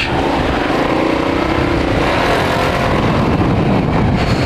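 Kasinski Comet GTR 650's V-twin engine pulling away and accelerating through traffic, with wind rushing on the helmet-mounted microphone.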